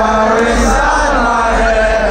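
Large crowd singing along in unison with a hip-hop song played loud over the festival PA, its deep bass running steadily under the voices.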